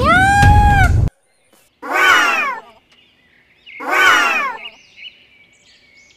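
A held, high pitched note cuts off about a second in. Then come two drawn-out animal calls, about two seconds apart, each falling in pitch. Faint high chirping follows near the end.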